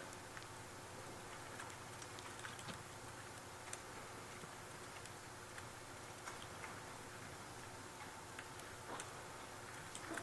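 Faint, irregular clicks of keys on a computer keyboard as code is typed, over a low steady room hum.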